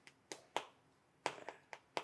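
Chalk tapping and scraping on a chalkboard as words are written: a faint series of short, sharp clicks, irregularly spaced, several a second at times.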